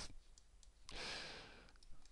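A person's single faint breath into a close microphone about a second in, with a small click near the end.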